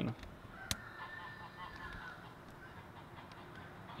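A goose honking faintly in the background, with a single sharp click about a second in.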